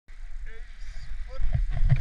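Low rumble and knocking picked up by a body-mounted action camera as a wooden horn sled starts off from a standstill in snow, growing louder about a second and a half in as it gets moving.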